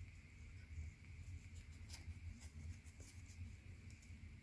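Faint scratchy ticks of fingers handling and folding a small strip of oil-filter media, over a low steady hum.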